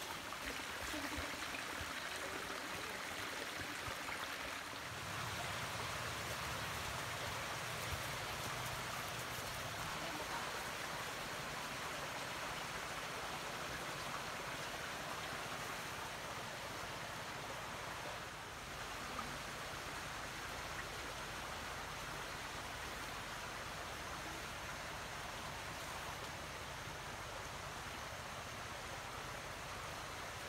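A small stream flowing: a steady, even rushing hiss of water.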